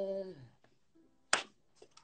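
The last sung note of a song with plucked-string accompaniment fading out within the first half second, then near silence broken by one sharp click about a second and a half in.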